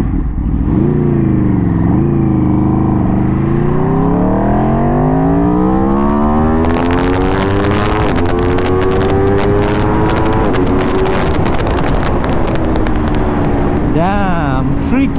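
Aprilia RSV4 RR's V4 engine, through an Arrow exhaust with a dB killer, accelerating hard from a standstill: the revs climb, dip briefly about two seconds in as it shifts up, then rise in one long climb. About ten and a half seconds in the revs drop and then fall slowly as the bike slows, with wind noise on the microphone building from about seven seconds in.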